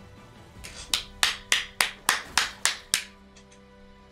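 A person clapping his hands about eight times in a quick, even run, roughly three claps a second, which then stops.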